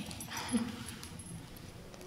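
A woman's short, soft giggle, loudest about half a second in, then only faint room noise.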